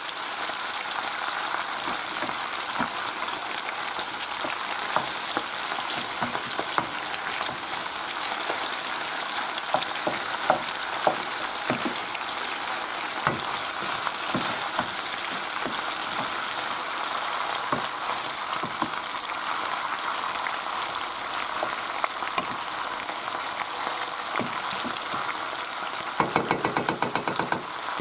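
Mixed seafood (prawns, squid, hake, mussels and monkfish) sizzling in a hot frying pan while it is stirred with a wooden spoon, a steady frying hiss broken by occasional sharp pops and clicks. Near the end comes a short, fast run of regular ticks.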